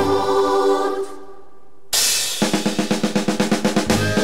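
Uniformed wind band with drums playing live: the music thins out about a second in, then after a short lull comes back with a sudden loud hit and a rapid, even snare drum roll, about six strokes a second, under a held chord.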